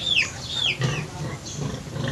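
A bird peeping: two short, high calls in the first second, each falling in pitch.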